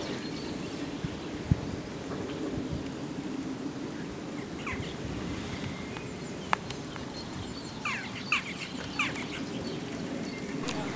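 Small birds chirping in short calls, a few around the middle and a cluster near the end, over a steady low outdoor background noise, with two sharp clicks.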